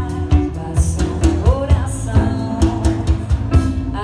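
Live band playing: a woman singing into a microphone over electric guitar, bass guitar and a drum kit keeping a steady beat, her voice gliding up in pitch about a second and a half in.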